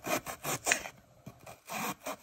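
A kitchen knife slicing through a red onion on a cutting board: about five quick, crisp cuts, each a short scrape through the layers.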